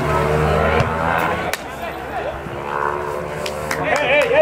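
Distant shouting from players and coaches on a soccer field over a low steady rumble that drops away about one and a half seconds in, with a single sharp click at that point.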